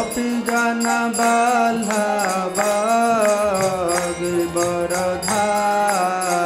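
A man singing a slow devotional chant, holding long notes that bend in pitch, with small brass hand cymbals (kartals) struck in a steady beat.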